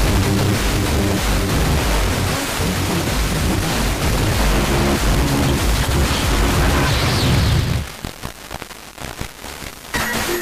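Music from Algeria's Chaîne 1 on 94.0 MHz, picked up as a weak long-distance FM signal over sporadic-E skip and heavily mixed with hiss. About eight seconds in the sound drops away to fainter noise.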